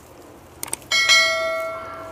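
Two quick clicks, then a bright bell chime that rings out and fades away over about a second and a half: the sound effect of a subscribe-button and notification-bell animation.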